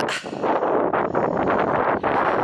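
Wind blowing across the microphone: a loud, steady rush of noise, with a short dip just after the start.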